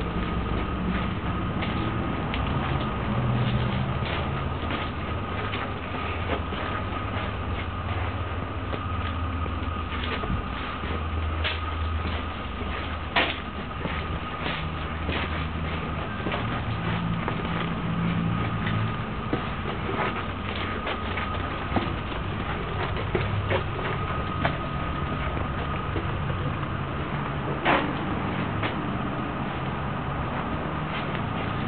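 Steady low rumble under a constant thin whine, with scattered light clicks and taps of footsteps and handling as a handheld camera is carried along stone-walled tunnels.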